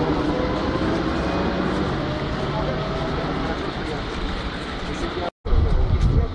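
Street noise of halted traffic on a bridge, a steady rumble of vehicles, with people's voices talking in the background. The sound cuts out completely for a moment near the end.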